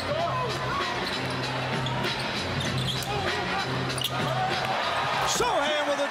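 A basketball being dribbled on a hardwood arena court, with sneakers squeaking and arena music carrying a steady bass line under the crowd.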